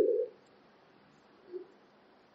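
A man's voice trailing off at the end of a spoken word in the first moment, then near silence broken by one brief, faint low sound about a second and a half in.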